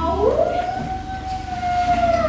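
One long, siren-like howl from a child's voice, gliding up in pitch over the first half second and then held steady.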